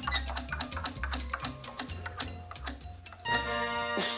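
A prize wheel spinning, its pointer clicking rapidly against the pegs over a music bed with a repeating bass line. The clicking stops a little past three seconds as the wheel comes to rest, and a held musical chord sounds.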